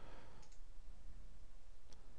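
Faint computer mouse clicks, one about half a second in and another near the end, over a low steady hum.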